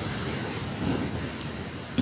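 Low rumbling noise with a few faint ticks from a hand-held phone's microphone as the phone is held and shifted.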